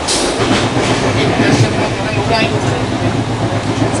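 Running rumble of a double-decker AC express passenger coach heard from inside, with irregular clicks as the wheels pass over rail joints and points in a station yard.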